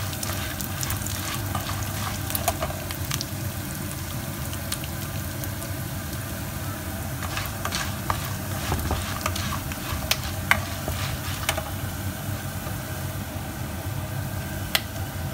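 Peanuts, chana dal and dried red chillies sizzling in hot oil in a nonstick pan while being stirred with a spoon, with scattered sharp clicks and scrapes as they are moved about.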